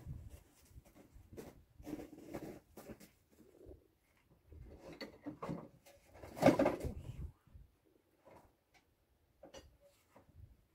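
Scattered knocks, clinks and rustles of hand tools being picked up and handled, with one louder clatter about six and a half seconds in.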